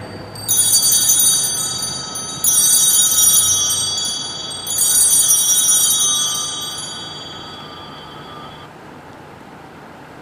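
Altar (Sanctus) bells rung three times in quick succession at the elevation of the consecrated host, marking the consecration. Each ring is a bright, high jingle that carries on and slowly dies away, the last fading out about two-thirds of the way through.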